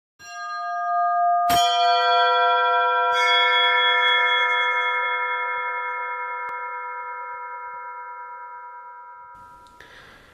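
Bell-like chime tones of an opening sting. One tone swells in, a sharp strike about one and a half seconds in adds several higher ringing tones, and more join around three seconds. Then they all slowly fade away.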